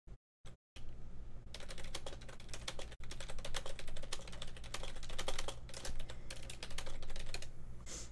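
Rapid typing on a computer keyboard: a quick, uneven run of key clicks that starts about a second in, over a low steady hum.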